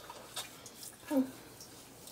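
Faint, soft wet squishing of hands working foaming face cleanser into a lather and onto the skin, with a short hummed "mm" a little past the middle.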